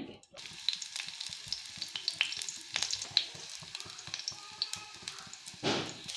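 Chicken seekh kabab frying in hot ghee in a shallow pan: a steady sizzle with scattered crackles and pops, starting a moment in, and a brief louder burst near the end.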